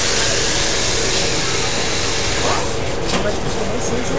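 A long hiss of compressed air from a single-deck bus's air system, lasting nearly three seconds before it fades, over the low running rumble of the bus engine as the bus moves slowly away.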